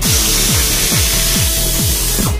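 Electronic dance music with a steady four-to-the-floor kick drum, about four beats a second, over a steady hiss.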